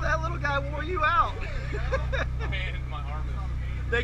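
People talking over the steady low drone of a sportfishing boat's engine.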